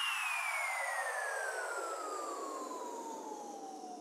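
Electronic falling sweep effect (a downlifter): a whooshing noise with a tone gliding steadily downward, fading out as it goes.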